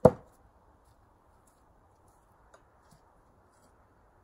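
Thrown Thor's-hammer tomahawk striking a wooden target block: one loud thud right at the start that dies away quickly, followed by two faint ticks a few seconds later.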